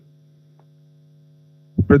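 Steady electrical mains hum, a low buzz of several even tones, picked up in the microphone's audio chain during a pause in speech. A man starts speaking near the end.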